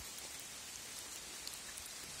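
Faint, steady outdoor background hiss with a few soft ticks.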